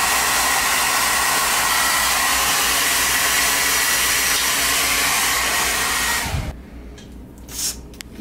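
Handheld hair dryer blowing steadily, a rushing airflow with a thin high whine from the motor, then cutting off about six seconds in.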